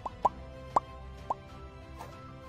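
Four short, rising pop sound effects, spaced unevenly, over soft background music: the kind of plop effects that accompany icons popping up in an animated end screen.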